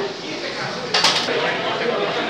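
A short, sharp metallic clink about a second in, from metal pipes being handled against a bamboo frame.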